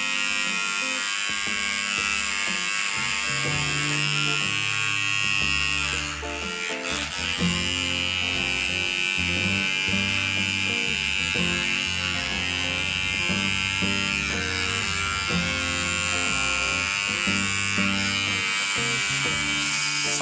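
Electric hair trimmer buzzing steadily as it cuts short hair along the sideburn and around the ear, with a brief dip in the buzz about six seconds in.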